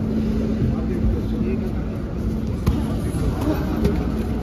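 Boxing sparring in a ring: a few sharp glove slaps and shoe scuffs on the canvas over a steady low hum and the general noise of a large hall.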